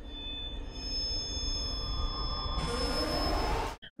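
Horror film score: a low rumbling drone under thin, high held tones, with a hiss that swells near the end before the sound cuts off suddenly.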